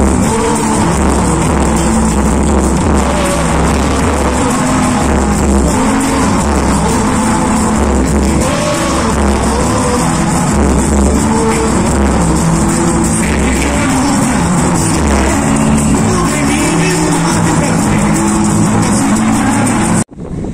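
Live samba band playing on an outdoor stage, loud, with a steady pulsing bass line under guitars and percussion; it cuts off suddenly at the end.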